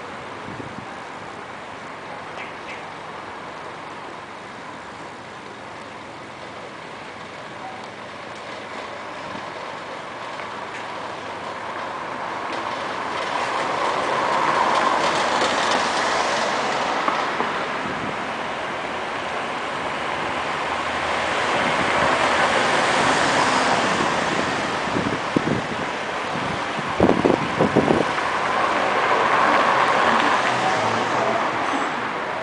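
Street traffic noise: vehicles pass close by in three swells of noise that rise and fade, the first around the middle and the last near the end, over the steady hum of a city bus and road traffic. A quick cluster of sharp knocks, the loudest sounds, comes about three-quarters of the way in.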